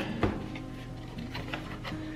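Soft background music with faint scraping and light taps as a knife blade slits the seal on a cardboard box.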